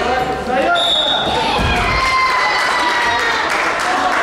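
A short, steady, high whistle blast about a second in, over voices echoing in a sports hall. It is followed by a long, slightly falling held call and a dull thud.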